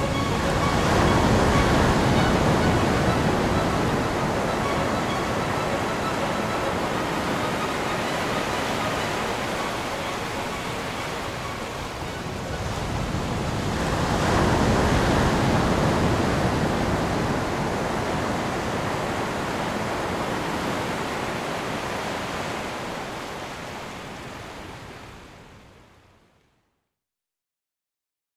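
Sea surf washing against a rocky shore in slow swells, with a big surge just after the start and another about fourteen seconds in, then fading out near the end.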